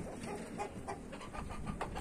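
Faint, scattered clucks and calls of backyard chickens.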